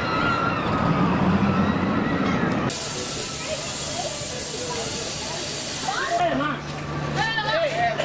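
Amusement-park ambience: a jumble of voices and machinery, then a sudden steady hiss that lasts about three seconds and cuts off abruptly. People chattering follow it, over a low steady hum.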